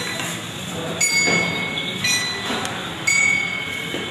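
Metal temple bell struck three times, about once a second, each strike ringing on in several clear tones.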